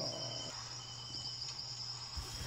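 A steady high-pitched drone over a low steady hum, with two faint short beeps in the first second and a half.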